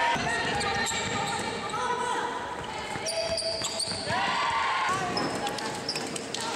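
Indoor basketball game sounds in a large gym: a ball bouncing and sneakers squeaking on the court, with players' voices.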